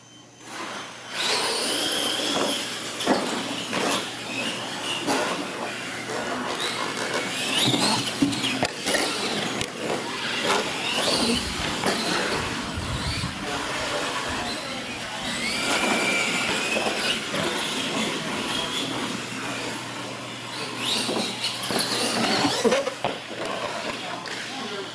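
Radio-controlled monster trucks racing from about a second in: electric motors whining up and down as they accelerate and slow, with tyre noise and several sharp thumps from the track.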